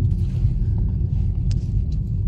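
Steady low rumble of a car's engine and tyres heard from inside the cabin while driving slowly, with two faint clicks in the second half.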